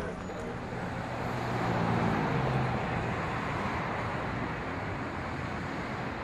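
Street traffic noise with a low engine hum, swelling around two seconds in, under faint voices.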